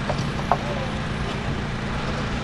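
Steady outdoor background noise with a low rumble, and a single sharp click about half a second in.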